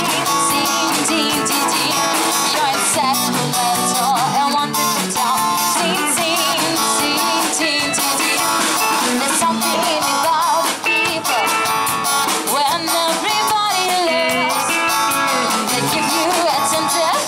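A live pop-rock band playing through small amplifiers: drum kit, electric bass and guitars, with a woman singing into a microphone at times.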